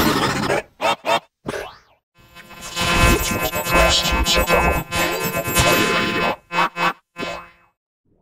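Cartoon production-logo audio of sound effects and music: a boing, quick hits and a falling glide, then a dense stretch of layered tones from about two to six seconds, and a few short hits near the end.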